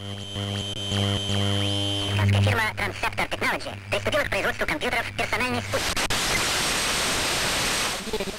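Gabber/hardcore techno in a quieter breakdown: a held synth chord over bass for about two and a half seconds, then choppy, stuttering vocal-sample sounds, then a wash of white-noise hiss for the last two seconds.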